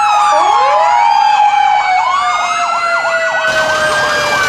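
Several fire truck sirens sounding at once: a slow wail gliding down and then back up in pitch, over a fast yelp of about four sweeps a second. A rush of noise joins about three and a half seconds in.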